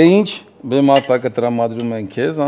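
A man talking in lively conversation, his voice rising in pitch at the start, with a brief clink of tableware about a third of a second in.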